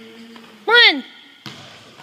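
A man's voice shouting one loud counted word, falling in pitch, about two-thirds of a second in, followed by a single thud about a second and a half in.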